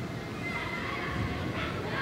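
Voices of players and onlookers calling out, echoing in a large indoor sports hall, with a high-pitched shout rising near the end.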